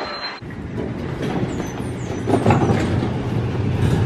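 A loaded brass luggage cart rolling into a padded freight elevator, its wheels and frame rattling over a rumble, with a steady low hum setting in about two seconds in.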